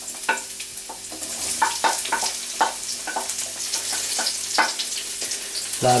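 Chopped onion and green pepper sizzling in hot oil in a frying pan as they are sautéed, with a steady hiss broken by many irregular crackles and clicks as a wooden spatula stirs them.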